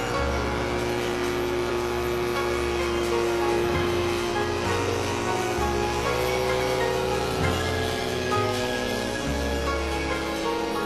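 Background music with slow, sustained chords over a deep bass note that changes every second or two.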